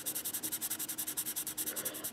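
Brown colored pencil shading on paper in quick back-and-forth strokes, an even run of about ten short rubs a second.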